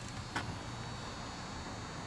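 Steady low background hum with one brief click about a third of a second in.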